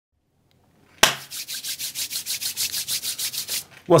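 A sharp knock about a second in, then rapid, even rubbing or scraping strokes, about nine a second, over a low steady hum, stopping just before the voice begins.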